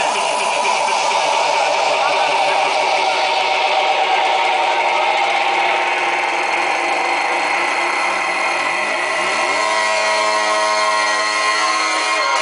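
Loud hardstyle dance music over a club sound system: a noisy rising sweep builds up, and a sustained synth chord comes in about three-quarters of the way through.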